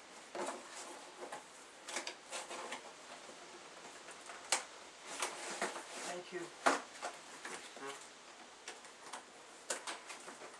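Close handling of clear plastic and paper on a table: rustling with a few sharp clicks and taps, the loudest about two-thirds of the way through, under low indistinct voices.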